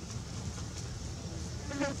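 Steady insect buzzing over a low, constant rumble.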